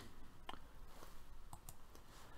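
Three faint computer mouse clicks, one about half a second in and two close together past the middle, over low room noise.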